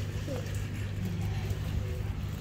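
Stroller wheels rolling over tarmac with a steady low rumble, with footsteps, under a brick underpass.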